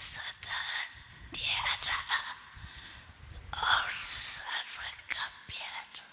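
A woman speaking in a whisper, in short breathy phrases with pauses between them.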